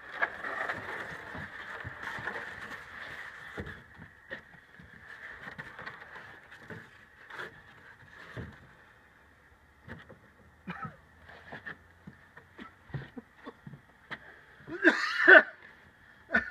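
Smoke bomb hissing as it burns, strongest over the first few seconds and then fading, with scattered light knocks and clicks. A brief louder sound comes near the end.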